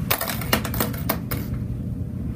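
A quick run of light clicks and taps over the first second and a half, small hard objects, likely toys, being set down and moved on a counter.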